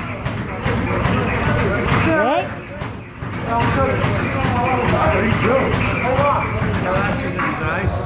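Indistinct voices talking over a steady background din, with a brief lull about three seconds in.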